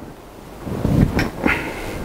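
Metal clunks and clicks from a wood lathe's tailstock as it is tightened and locked against the bowl blank. A dull thump comes about a second in, followed by a couple of sharp clicks.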